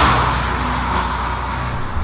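A vehicle passing at highway speed: a rushing whoosh that is loudest at the start and slowly fades away.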